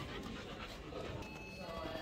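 Indistinct voices over a busy background of mixed noise.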